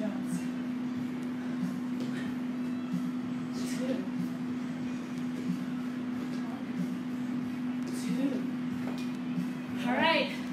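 A steady low hum, with soft scattered thuds of feet landing on rubber gym mats during a jumping exercise and a few faint breaths.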